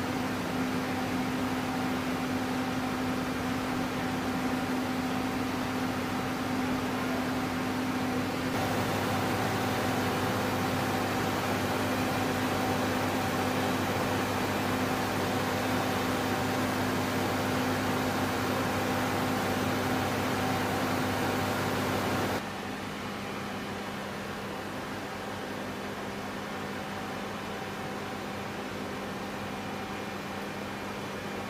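Steady machinery hum and rush of air, with a constant low drone, typical of the air-conditioning and equipment running in a hangar. It grows louder about eight seconds in and drops suddenly about twenty-two seconds in.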